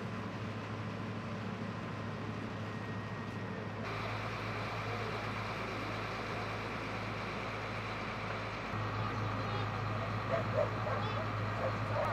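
Fire engines running steadily at the scene, a low, even hum, with indistinct voices in the background. The sound changes abruptly about four and nine seconds in.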